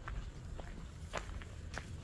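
Footsteps of a person walking on a dirt road: several short, crunching steps over a faint low rumble.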